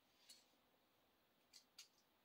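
Faint clicks of plastic Lego bricks being handled and pressed together: one soft click soon after the start, then two quick clicks close together near the end.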